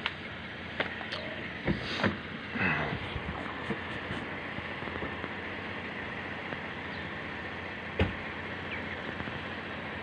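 Car engine idling steadily, with a few light knocks early on and one sharp thump about eight seconds in.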